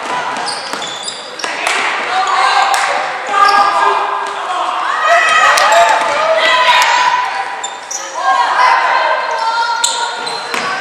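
Basketball game in a gym: voices of players and spectators calling out over each other, with a basketball bouncing on the hardwood court and brief high sneaker squeaks, in the echo of a large hall.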